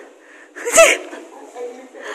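Speech only: a woman's short spoken reply, with one sharp, breathy burst of voice a little under a second in.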